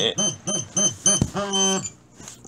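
RC transmitter sounding its throttle-high warning at switch-on, meaning the throttle stick is not at idle: a rapid series of electronic beeps, about five a second, then a click and one longer held tone.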